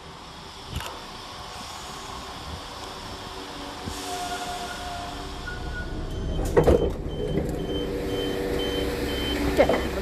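A Class 172 Turbostar diesel multiple unit running into the platform, growing louder, then its passenger door being opened with the push button: a couple of loud clunks about six and a half seconds in, followed by a steady run of high door beeps.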